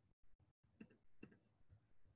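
Near silence: faint room tone that cuts out briefly at the start, with two faint mouse clicks about a second in.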